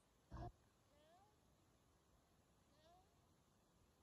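Near silence with one brief thump about half a second in, then two faint, short rising squeaks.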